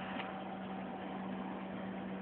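Cooling fans of a homebuilt vacuum-tube RF power supply running, a steady hum under an even whirring hiss.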